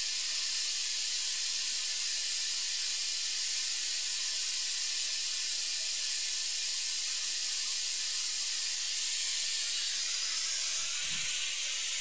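A steady high hiss at an even level, with a brief low thump near the end.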